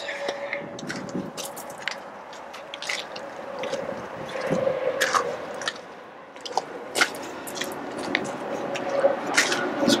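Footsteps crunching on gravel, with irregular sharp clicks and a faint steady hum underneath.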